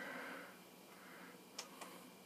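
Faint room sound with a soft rustle at the start, then two small sharp clicks close together about a second and a half in.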